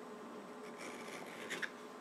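Faint rubbing of a fingertip across the freshly milled face of a steel block, over a low, steady background hum.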